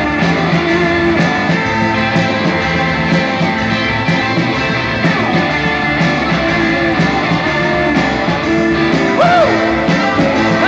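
Live rock band playing: electric guitars over a drum kit, loud and steady, with a few bent notes near the end.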